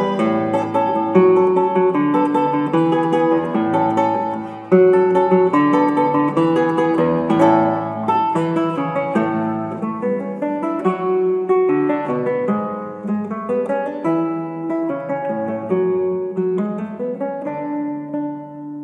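Solo guitar playing a brisk passage of plucked notes over a moving bass line, with a loud accented attack about five seconds in, after which the playing gradually grows quieter.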